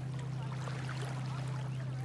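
A steady low hum with faint distant voices above it.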